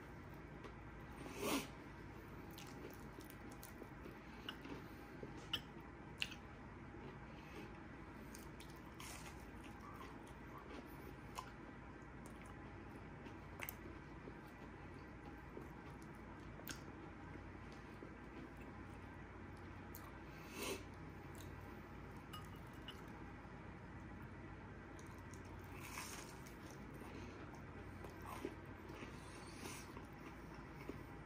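Faint close-up chewing and crunching of a Hot Cheeto-crusted fried chicken strip, with scattered short crisp crunches. The loudest come about a second and a half in and again about two-thirds of the way through.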